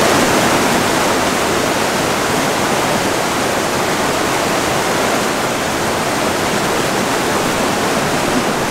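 Mountain river running over rocks in whitewater rapids: a steady, loud rush of water.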